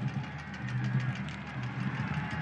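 Stadium ambience from a soccer match broadcast, a low steady drone with faint music-like tones and light crowd noise, with no commentary.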